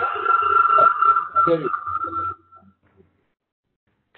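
A man's brief spoken reply over a video-call line, under a steady high whistling tone typical of audio feedback on the conference connection. The tone fades out about two and a half seconds in, leaving near silence.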